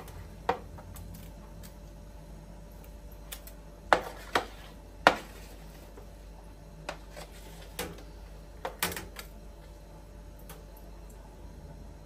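A spatula scraping and knocking against a metal baking tray as roasted vegetables are scooped off it into a clay pot, with scattered sharp clicks and clacks, the loudest about five seconds in.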